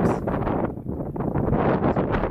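Wind buffeting a handheld camera's microphone in gusts on an exposed ridge trail.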